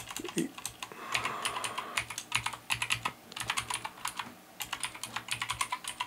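Typing on a computer keyboard: quick, uneven runs of keystrokes with a short lull a little past the middle.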